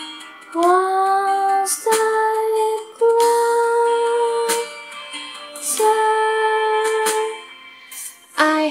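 A young woman's voice singing four long, steady wordless notes, one after another, over a soft backing accompaniment.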